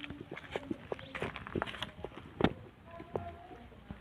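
Shuffling and handling noises with scattered light knocks, and one sharp knock about halfway through.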